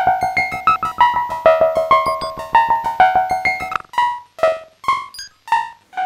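Synton Fenix 2d modular synthesizer playing a quick sequence of short pitched notes through its built-in delay, dry and delayed signal mixed, with no CV on the delay time. About four seconds in the sequence stops and a few spaced echoes trail off.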